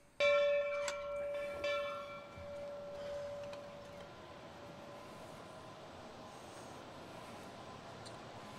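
A metal bell struck about three times in under two seconds, each stroke ringing out with several clear tones and fading away over about four seconds.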